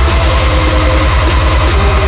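Witch house/speedcore electronic track at 150 BPM: a distorted bass pulsing about ten times a second under sustained synth tones.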